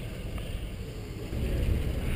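Low steady rumble of a boat, mixed with wind on the microphone.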